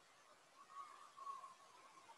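Near silence: faint room tone from the microphone.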